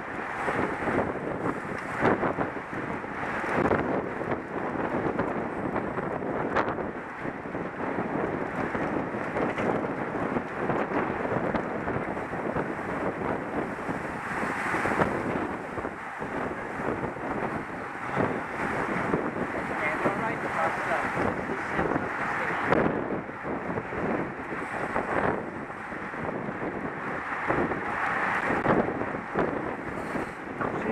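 Wind rushing over a helmet camera's microphone while riding at speed in a bunched road-race field: a steady rush with a few brief louder gusts.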